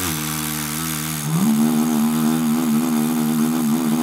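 Lips free buzzing a steady low note while the player sings through his throat at the same time: multiphonics, two pitches at once. About a second in, the sung pitch slides up and holds above the buzz with a slight waver.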